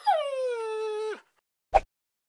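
A dog whining: one long call that drops quickly in pitch, then holds steady for about a second before bending down and stopping. A brief sharp sound follows shortly after.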